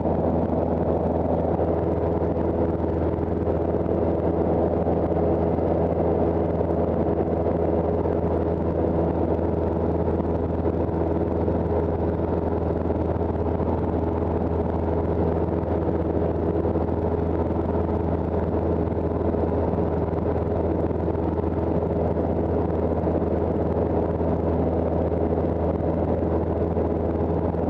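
Cessna 172's piston engine and propeller running steadily in flight, a constant low drone heard from inside the cabin.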